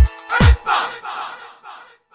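Final beats of an electronic dance track: a four-on-the-floor kick drum under held synth notes, the last kick about half a second in. After it, a vocal sample repeats in echoes that fade away.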